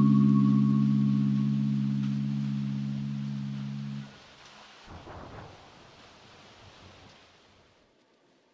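A sustained low chord, the last note of background music, fading steadily and then cut off abruptly about four seconds in. After it comes only faint hiss with a soft swell around five seconds, and then silence.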